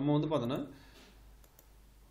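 A man's voice briefly at the start, then a single faint computer mouse click about a second and a half in, opening a drop-down menu.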